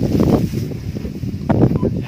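A man's voice in short bursts, the words not clear, over a steady low rumble of wind on the microphone.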